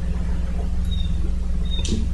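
A pause in speech filled by a steady low background hum, with a faint short high squeak about a second in and a soft click just before the end.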